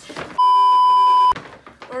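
An edited-in steady beep tone, like a censor bleep, starting about half a second in and lasting about a second, loud over soft speech and handling of clothes.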